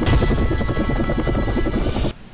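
Helicopter rotor sound effect, a fast, even chop, mixed with music in a programme's opening jingle; it cuts off suddenly at the end.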